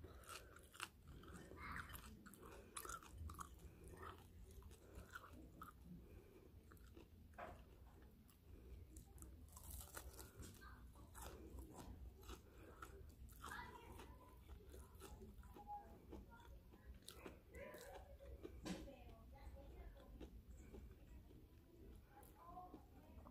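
Faint chewing of crunchy Cheeto-breaded fried shrimp: soft crunches and wet mouth clicks, scattered irregularly throughout.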